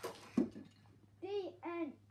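A child's voice calling out in two short, rising-and-falling syllables, about a second in, after a brief scuffing noise near the start.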